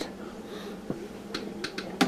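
Quiet room noise with a few faint, short clicks: one a little under a second in and a quick cluster of light ticks near the end, the sound of small handling movements.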